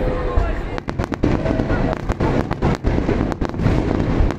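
Aerial fireworks bursting overhead: a rapid, uneven string of sharp bangs and crackles over a continuous low rumble, starting under a second in.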